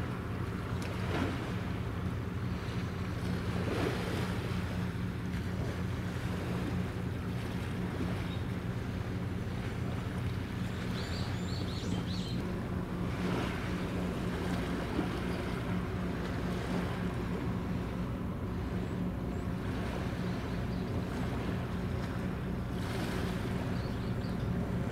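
Steady low engine drone of a Japan Coast Guard patrol ship passing close by, over wind and water noise.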